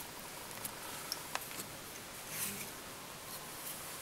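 Quiet room hiss with a few faint, sharp little clicks of hand handling as a hackle is wound down the body of a fly held in a tying vise.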